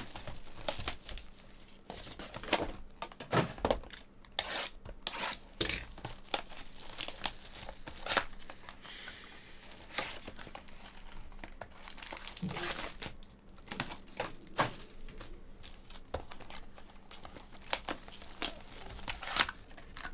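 Clear plastic shrink-wrap being torn and peeled off a cardboard trading-card hobby box, crinkling in irregular crackles.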